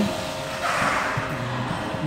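Spindle motor spinning at high speed, about 10,000 rpm, for a dynamic balance check of its pulley: a steady whine, with a short rush of noise about a second in.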